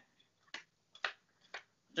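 Playing cards being dealt one at a time onto a table mat, a faint snap with each card, about two a second.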